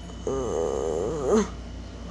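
A child's voice making one wordless, wavering noise for just over a second, ending with an upward swoop.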